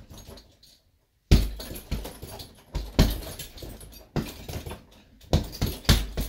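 Bare-knuckle punches landing on a hanging heavy punching bag, a run of sharp hits starting about a second in. Each hit is followed by the suspension chain jingling: the bag hangs loose at the top, so the chain jingles more than usual.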